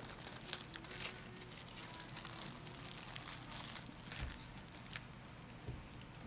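Faint crinkling and small clicks of laminated paper pages being handled and opened, with a couple of soft bumps near the end.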